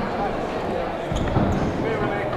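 A nine-pin bowling ball is set down on the lane with a thud about a second in and rolls away down the lane. Voices carry through the large hall.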